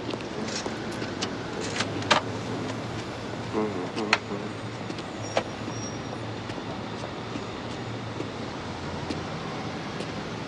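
Steady background ambience, a low hum and hiss, with a few sharp clicks scattered through it and a brief snatch of voice about three and a half seconds in.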